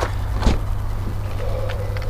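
Rear side door of a Toyota Prius Alpha being opened: a single click of the handle and latch about half a second in, over a steady low rumble.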